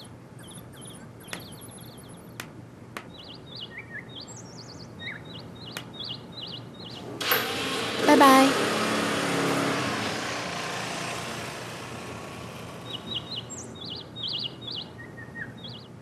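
Small birds chirping with short, repeated high calls. About seven seconds in, a motorbike pulls away, its engine noise fading out over several seconds.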